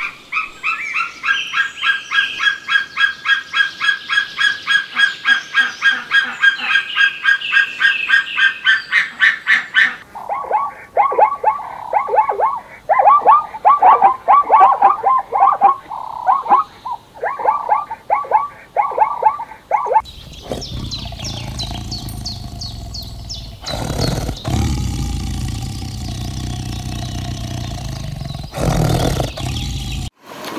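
A falcon's rapid, high, repeated calls for about ten seconds; then a plains zebra's barking bray, yelping calls in quick runs; then, from about twenty seconds in, a tiger's low rumbling growl.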